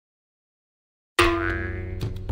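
Silence, then about a second in a sudden comic sound effect: a sharp-onset ringing tone with many overtones that fades, as light background music with a low bass begins underneath.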